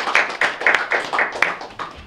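Hand clapping from a small audience, with one nearby pair of hands loud and distinct at about four claps a second, dying away near the end.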